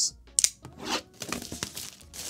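Clear plastic shrink wrap being torn and crinkled off a cardboard product box, in irregular rasps with a sharp rip about half a second in.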